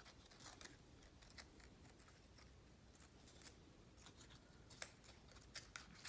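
Small scissors snipping printed paper, trimming the crayon-marked edges off a cut-paper flower: faint, irregular snips spread through.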